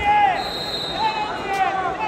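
Raised, shouting voices over the hubbub of a large arena, with a knock at the very start and a faint steady high tone for about a second in the middle.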